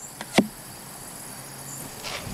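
An arrow striking the target with a sharp knock less than half a second in, after a couple of lighter clicks. Then a steady outdoor background with crickets.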